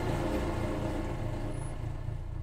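Car engine idling steadily with a low, even rumble that eases slightly toward the end.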